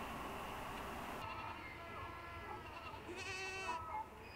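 A wash of pouring water in the first second, then an animal bleating several times, with a long, quavering bleat near the end.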